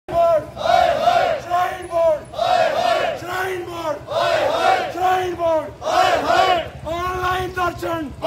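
Crowd of marching protesters chanting slogans in unison, in short repeated phrases about every two seconds.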